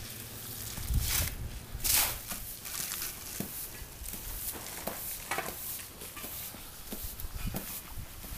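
Faint outdoor background hiss, broken by a few short scuffs about one, two and five seconds in.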